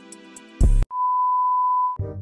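A short, heavy low thud, then a steady single-pitched beep tone held for about a second, like an edited-in censor bleep.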